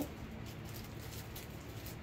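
Quiet room tone with a steady low hum and faint small handling sounds.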